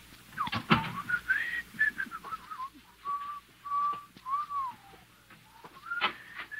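Someone whistling a tune: single clear held notes joined by slides up and down, over a few scattered light knocks, the loudest about a second in.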